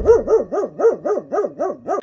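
A dog yapping rapidly, about five short, even barks a second, each rising and then falling in pitch.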